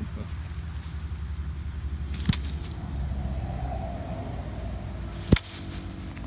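Steady low rumble of nearby highway traffic, with two sharp clicks, one about two seconds in and a louder one near the end.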